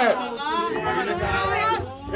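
Speech only: voices talking over one another, with no other sound standing out.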